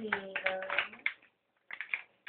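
A person's voice speaking for about the first second, then a pause, then a few quick light clicks near the end.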